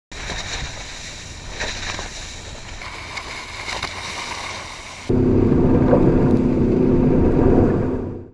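Sea spray and water rushing along the hull of a motorboat running at speed, a noisy hiss with splashes. About five seconds in, the sound changes abruptly to a much louder, muffled low rumble with a steady hum.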